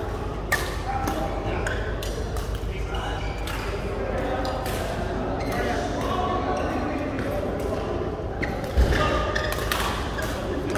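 Badminton rackets striking a shuttlecock in an indoor hall: a few sharp, separate clicks, with a heavier thump near the end. Voices from other players carry through the hall.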